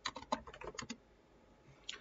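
Typing on a computer keyboard: a quick run of key clicks for about the first second, then a pause and a single keystroke near the end.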